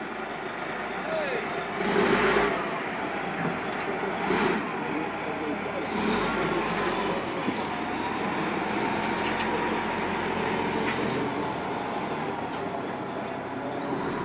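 Caterpillar 980G wheel loader's diesel engine running, a steady drone with a few brief louder surges around two and four and a half seconds in.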